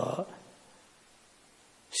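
An elderly man's voice, speaking into a microphone, ends a phrase, then pauses for about a second and a half with only faint room tone, and starts speaking again near the end.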